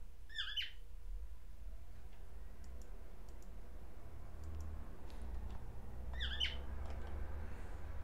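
A pet cockatiel gives two short chirping calls, one near the start and another about six seconds in. Faint computer keyboard clicks come in between.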